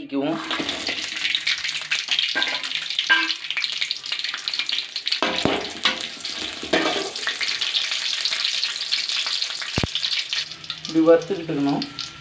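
Dried red chillies and garlic cloves frying in hot oil in an aluminium kadai: a steady, crackling sizzle that starts right at the beginning.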